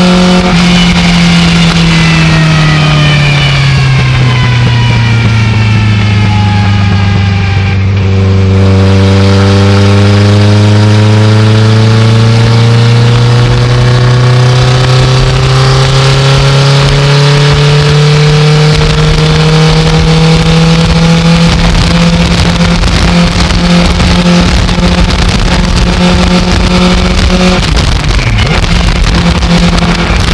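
Legends race car's Yamaha motorcycle engine heard from inside the cockpit: the revs fall for about eight seconds off the throttle, then climb slowly and hold steady at part throttle, with a brief dip near the end. Wind and road noise run underneath.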